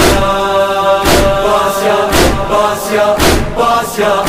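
Muharram noha, a devotional mourning song about Karbala, sung by male voices holding long notes over a heavy beat that strikes about once a second.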